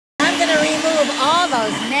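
Electric hand mixer running with its beaters in a hollowed pumpkin's stringy pulp, a steady motor hum under a woman's louder speech.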